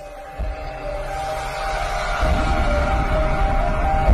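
Intro music for a channel logo animation: held tones swelling steadily louder, with a heavy bass layer coming in about two seconds in.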